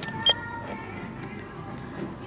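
Checkout barcode scanner giving one short, sharp beep about a quarter second in, over faint background music.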